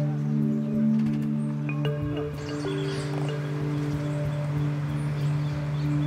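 Background music of sustained low held notes over a steady drone, with the upper notes changing about two seconds in.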